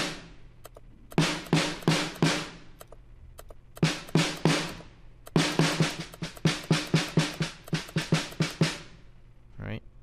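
Sampled snare drum from the Addictive Drums software kit playing back a programmed pattern through its compressor, set to about five to one. A few sharp hits come in short groups, then a quick run of about four hits a second from about five seconds in, stopping shortly before the end.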